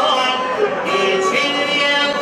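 Albanian folk music: a man singing, accompanied by a bowed violin and a plucked long-necked lute. Long held notes glide between pitches.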